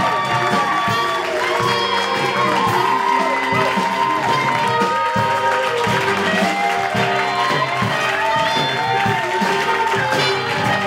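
A small live band playing the song's instrumental introduction: grand piano, electric bass and acoustic guitar with a melody line on top, at a steady level throughout.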